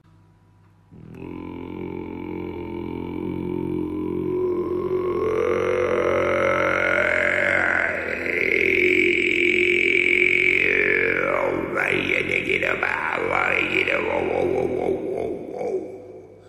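Didgeridoo drone starting about a second in, a steady low tone whose overtones sweep slowly up and down, then shift quickly in the last few seconds before it fades.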